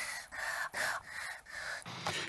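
A TV news speaker's breath intakes, isolated from the surrounding speech and strung together: about five short, breathy inhalations in quick succession.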